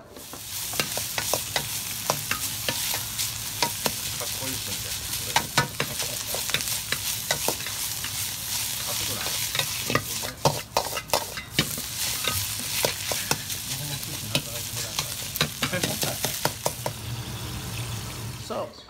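Fried rice being stir-fried in a wok over a high gas flame: a steady sizzle with many sharp clacks and scrapes as it is stirred and tossed. There are a few brief breaks in the sound around the middle.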